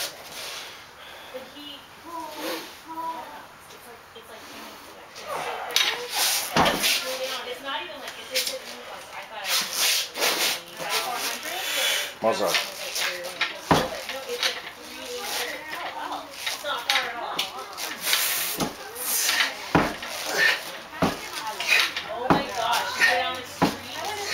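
Heavy one-arm dumbbell rows: a 160 lb dumbbell knocks sharply against the floor mat between reps, more often in the second half, amid the lifter's forceful breaths and grunts.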